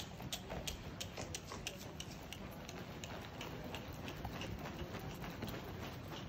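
Hoofbeats of two ponies setting off together on dirt arena footing: a quick, irregular run of soft knocks that grows fainter after the first couple of seconds as they move away.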